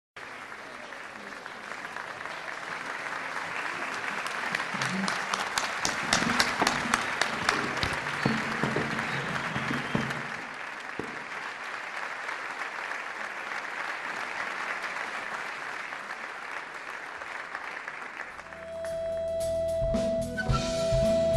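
Concert audience applauding, the clapping swelling to its loudest in the middle with sharp individual claps, then easing off. About a second and a half before the end an orchestra of Arab instruments starts playing on a long held note.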